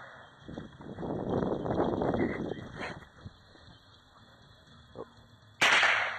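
A single sharp shot from a Ruger 10/22 .22 rimfire rifle about five and a half seconds in, the loudest sound here. Before it, from about one to three seconds in, there is a stretch of low rustling noise.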